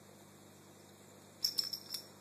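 A few quick light metallic clinks from a cat's collar tag jingling as the cat rolls on the carpet, about one and a half seconds in, over quiet room tone.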